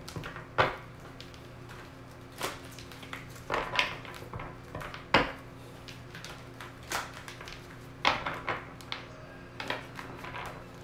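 A deck of tarot cards being shuffled and split by hand: irregular soft slaps and rustles of the cards, a few seconds apart, over a low steady hum.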